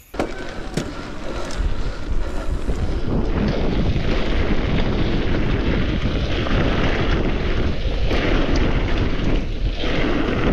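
Wind buffeting a handlebar-mounted camera microphone over the rumble and rattle of a mountain bike descending a dirt trail, with sharp knocks from the bike over bumps. It builds over the first few seconds, then stays loud and steady.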